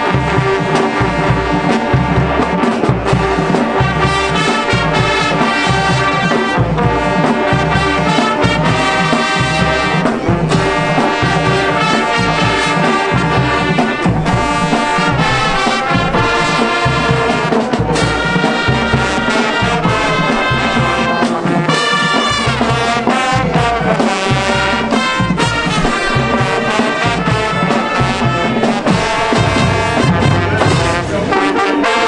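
High school marching band playing, brass to the fore over a steady low beat.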